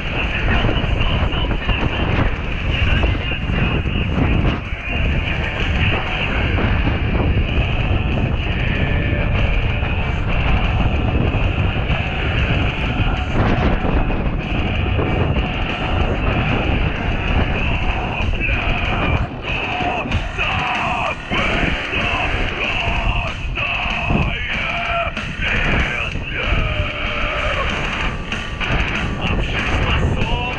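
Skate wheels rolling over a concrete sidewalk in a loud, continuous rumble, with music playing over it.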